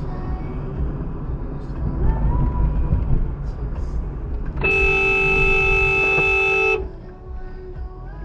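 Car horn held for about two seconds, a steady blare that starts and cuts off abruptly about halfway through, over the low rumble of a car driving on the road.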